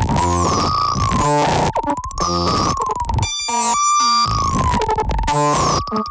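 Experimental modular synthesizer music: a tone near 1 kHz wavers slowly up and down, about once every second and a half, over choppy, stuttering noise, with a burst of glitchy stacked tones midway.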